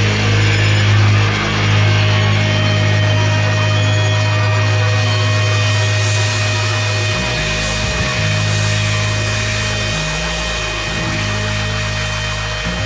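Sustained distorted noise drone closing out a hardcore punk track: a loud, buzzing low note held steady with high whining tones over it. The low note shifts briefly about seven, ten and eleven seconds in.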